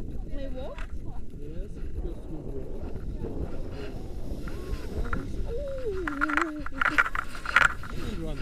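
Voices talking over a low wind rumble on the microphone, with a run of short scuffing noises near the end as the takeoff run starts.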